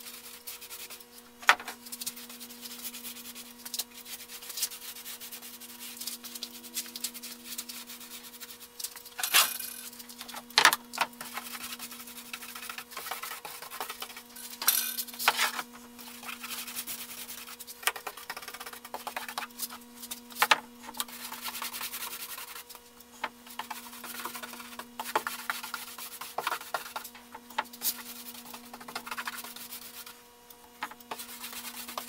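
Paintbrush bristles stroking paint onto a six-panel door, a continual soft rubbing with a few sharp taps scattered through, over a steady low hum.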